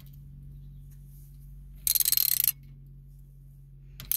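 Ratchet with a 3/8-inch deep socket clicking in a short quick run about halfway through as it tightens the pressure-adjustment nut on a well pump pressure switch, over a steady low hum.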